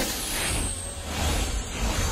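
Movie soundtrack of a vehicle at speed: low engine rumble under rushing noise and a hiss.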